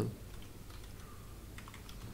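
Computer keyboard typing: a few faint, separate keystrokes.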